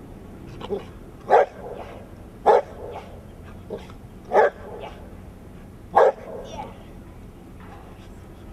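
A large dog barking: four loud single barks a second or two apart, with a few quieter barks between them.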